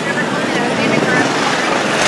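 Small gasoline engines of parade mini cars and a go-kart running as they drive past, with voices in the crowd; the engine noise grows louder near the end as the go-kart comes close.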